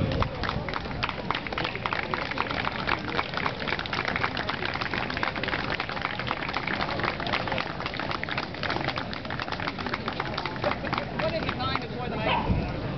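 Faint outdoor voices in the background over a dense, continuous run of small clicks and rustles.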